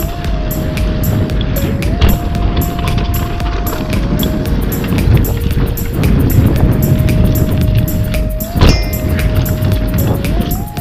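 Background music with a steady beat and long held notes, over the wind and tyre rumble of a bicycle riding fast down a dirt trail.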